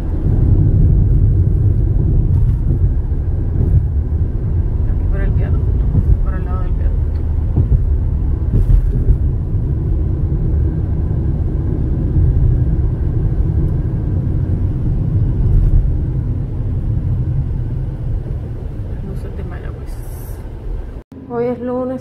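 Steady low road and engine noise inside a moving car's cabin, with a faint voice briefly in the background; it cuts off suddenly near the end.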